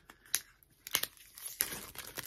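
A Funko Soda collectible can being opened by hand: a few sharp clicks as the sealed lid is worked, then denser crinkling and crackling of the packaging near the end.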